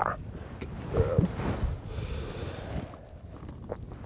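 Breathy, wheezing laughter trailing off, with a short voiced chuckle about a second in.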